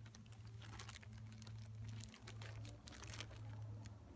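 Clear plastic zip-top bag being handled and pressed shut: a run of faint crinkles and small clicks over a steady low hum.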